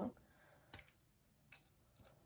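A few faint, sharp clicks from a plastic lipstick tube being opened and handled to check an old lipstick, in near quiet.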